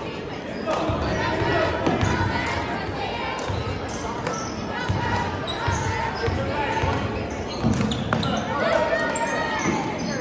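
Basketball being dribbled on a hardwood gym floor, with repeated thuds of the ball, under the indistinct talk and calls of spectators and players in a large gym.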